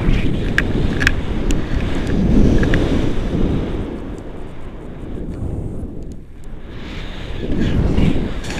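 Wind buffeting the microphone of a camera during a tandem paraglider flight: a low, rumbling rush of air with a few light clicks in the first two seconds. It eases about six seconds in and builds again near the end.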